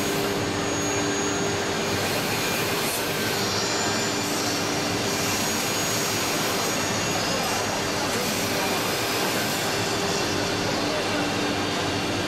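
Steady, loud machinery noise of a trade-show hall, with a constant low hum running under it.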